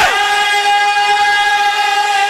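A man's amplified singing voice holding one long, high, steady note at the end of a sung qasida line.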